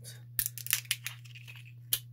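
Plastic film seal being torn and peeled off the cap of a Ramune marble-soda bottle: a quick run of sharp crackles in the first second, then one more crackle near the end.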